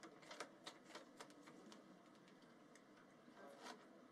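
Near silence: faint room tone with a scatter of faint, irregular clicks.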